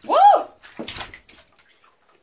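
A voice calling a single "woo", its pitch rising and then falling over about half a second, followed by a few faint bath-water sounds and then quiet.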